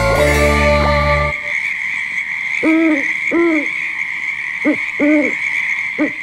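Spooky intro music ends about a second in, giving way to an owl hooting four times, roughly in two pairs, over a steady high-pitched background drone: a horror-themed sound effect.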